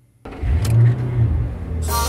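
Lamborghini engine revving: a deep rumble that comes in suddenly and swells, then eases. Music starts near the end.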